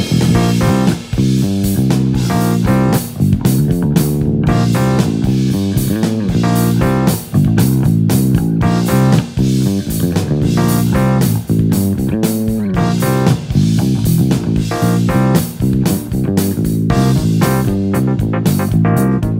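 Cort Artisan A4 electric bass played fingerstyle, a busy line of plucked notes over a backing track with drums.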